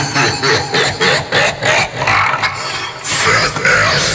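Opening of a hard trance DJ mix: a dense, noisy synth sound that has just faded in, chopped into pulses about four times a second over a steady low bass band.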